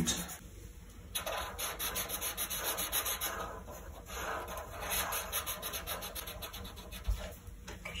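Black Sharpie marker tips scribbling on paper as two people colour in solid areas of their drawings, a soft scratchy rubbing made of many quick back-and-forth strokes. It is fainter for about the first second.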